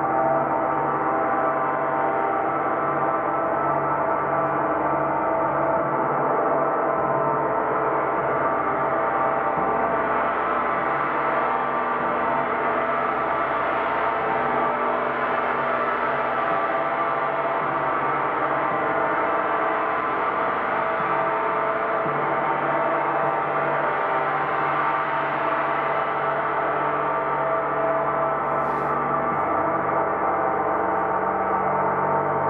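A large gong played with a felt-headed mallet and kept sounding as a steady, dense wash of many overtones. No single strike stands out, and the loudness stays even throughout.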